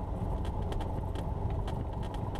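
Cessna 172's piston engine running at low power on the ground: a steady, muffled low drone, with faint scattered ticks above it.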